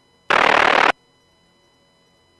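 A short, loud burst of radio static, about half a second long, that starts and stops abruptly: the squelch burst of a radio scanner channel opening and closing. A faint steady hum lies underneath.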